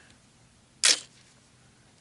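A single sharp click a little under a second in, from the AR-15 being handled as it is readied to fire.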